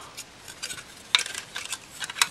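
Unpainted white plastic model-kit parts, the cab and hood of a 1:25 truck kit, handled in the hands, giving a few light clicks and taps as they knock together, the sharpest just past a second in.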